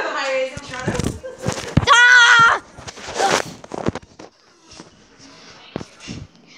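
Children's high voices during rough play. A loud, drawn-out, wavering cry comes about two seconds in, with knocks just before it, and it turns quieter in the second half.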